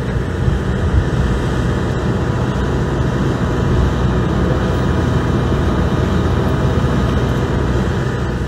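Steady, loud rumbling noise outdoors on an airport ramp, strongest in the low end, with faint steady high whining tones above it.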